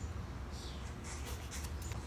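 Low steady rumble of handling noise on a phone microphone, with light rustling of a paper notepad being picked up and held, most of it in the second half.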